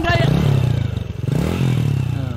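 Motorcycle engine running, revved up and down twice so that its pitch rises and falls.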